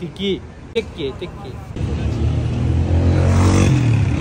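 A motor vehicle's engine passing close by on the street, starting about two seconds in, rising slightly in pitch and growing louder to a peak near the end.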